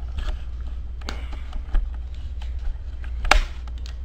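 Plastic Lego pieces clicking and knocking as hands work the walker model, with one sharp, loud click near the end, over a steady low rumble.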